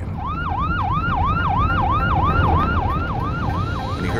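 Sheriff's patrol car siren in yelp mode: a fast rising wail that drops back and repeats about three times a second, over a steady low rumble of vehicle noise.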